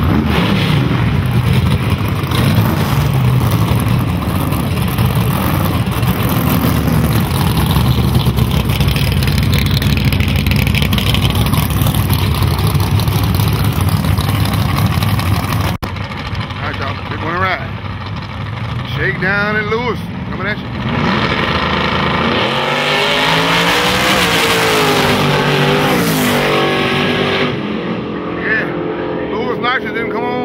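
Small-block V8 drag car doing a burnout, its engine held high with the rear tyres spinning, for about the first half. After an abrupt cut and some voices, two drag cars launch, their engines rising in pitch as they accelerate away down the strip.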